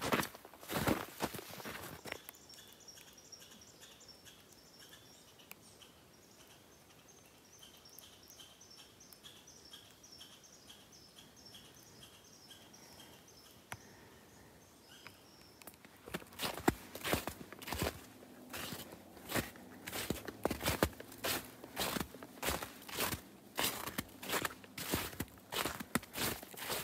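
Footsteps on a snow-covered trail: a few steps at first, then a long near-quiet stretch, then steady walking from a little past the middle, about two steps a second.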